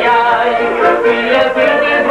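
Music: a man singing an Aromanian folk song, his melody wavering and ornamented.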